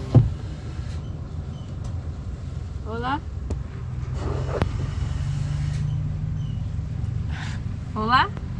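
Car engine idling steadily, heard from inside the cabin, with a sharp click just after the start. A person's voice calls out briefly with rising pitch about three seconds in and again at the end.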